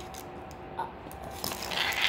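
Red plastic scoop-stick and ball scraping and knocking on a tile floor as the ball is scooped up, with a short knock and then a rasping scrape near the end.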